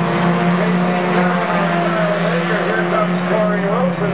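Compact four-cylinder stock cars racing around an asphalt oval, their engines holding a steady drone as they run side by side at speed.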